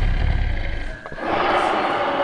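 Animatronic T. rex roaring through loudspeakers: a deep rumble for the first second, then a louder, harsher roar from about a second in.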